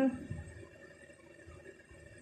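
Quiet room tone with a few faint, soft low bumps from hands handling yarn and a metal crochet hook.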